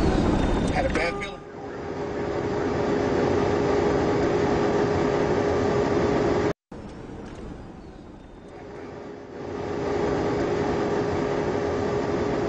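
Steady engine and road noise of a moving vehicle heard from on board, with a constant droning hum. The sound cuts out for an instant about halfway through, comes back quieter for a couple of seconds, then returns to full level.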